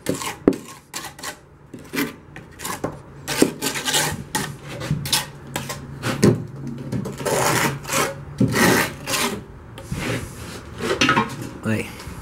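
Cement-glue mortar being scraped and spread along ceramic bricks by hand: a run of irregular rasping scrapes.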